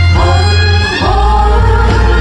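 A woman singing a slow trot ballad live over a band backing track, amplified through a concert PA.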